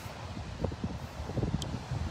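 Wind buffeting a phone's microphone on an open beach: an irregular low rumble, with one brief faint high tick about one and a half seconds in.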